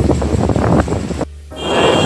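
Outdoor market ambience with wind rumbling on the microphone and some music in the background. The sound drops out briefly a little past a second in, at a cut, and comes back with a different background.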